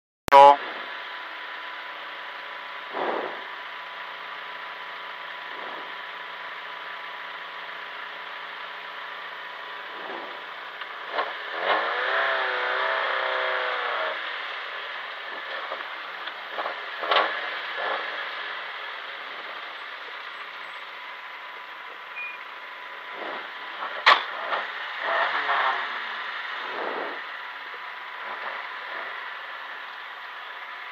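Steady in-cabin noise of a rally car with its engine running at low revs, with a faint constant tone. Brief muffled voices come in about 12 seconds in and again near the end, with a few clicks and knocks; a loud click opens the clip.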